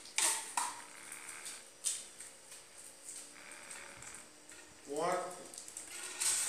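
Small candy wrappers crinkling and rustling as they are unwrapped by hand, with a few sharp clicks early on and a brief vocal sound near the end.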